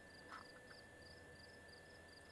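Near silence with a faint, high chirping that repeats evenly about four times a second, from a small calling animal, and one short soft call about a third of a second in.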